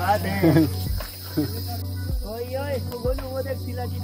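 A steady, high-pitched insect chorus chirring continuously, with short bits of men's voices and laughter over it.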